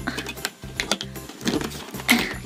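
Fingers working at the door of a cardboard chocolate advent calendar: quick clicks and rustles of card and foil as the chocolate is pried out, several a second. Background music with a low bass line plays under it.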